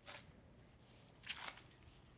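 Faint, short soft squelch about a second and a half in as a raw meatball is set down into a skillet of simmering sauce.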